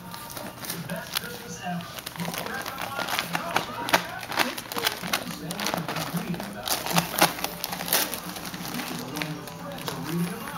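Christmas wrapping paper crinkling and tearing as small dogs rip at wrapped presents: many short, sharp rustles and rips, with music and voices in the background.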